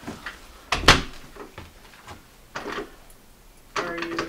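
Front door being tried by its knob: a sharp knock about a second in as the door is jolted against its latch, then a few lighter rattles. The door is locked.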